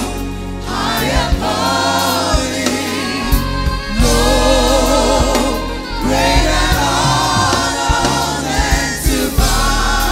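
A gospel worship team of several singers with a woman's lead voice, singing long held notes with vibrato.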